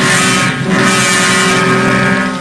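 Old sci-fi film trailer soundtrack: a steady, engine-like droning sound effect with a rushing hiss that swells at the start and again just under a second in.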